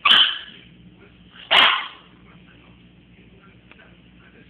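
A Brussels griffon barking twice, two sharp barks about a second and a half apart. It is the frustrated barking of a small dog that cannot jump up.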